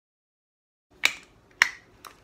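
Two sharp plastic clicks about half a second apart, after a second of silence: the snap-on hub caps of a stroller's rear wheels being pressed into place over the axle pins.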